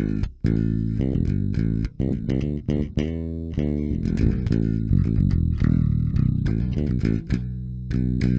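Five-string Warwick Thumb bass with active pickups played through a Sushi Box FX Dr. Wattson preamp pedal (modelled on the Hiwatt DR103 preamp), gain set low at about nine o'clock. It plays a steady run of plucked notes with a couple of brief breaks.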